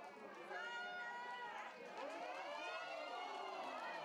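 Several voices shouting and calling out at once on a football pitch, their pitch rising and falling as they overlap.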